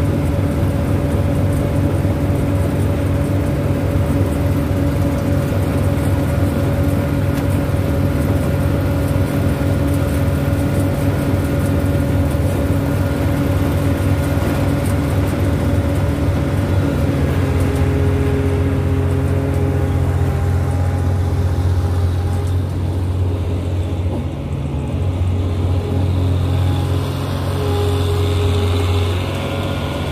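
Combine harvester's diesel engine running steadily close by. About halfway through, its note shifts slightly lower.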